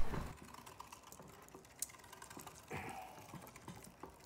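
Faint, irregular clicks and ticks from a hand-cranked Griswold cast iron meat grinder working pork shoulder through its grinding plate.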